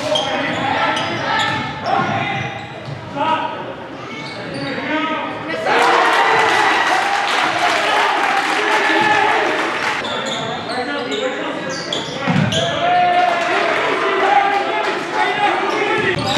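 A basketball dribbling and bouncing on a gym's hardwood floor, echoing in the hall, with players and spectators shouting. The voices and crowd noise grow louder for a few seconds in the middle.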